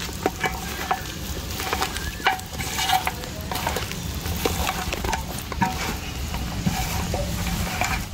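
A hand mixing raw quail pieces with spice powders and ginger-garlic paste in a steel plate: a steady wet rustle with irregular small clicks of meat and fingers against the metal.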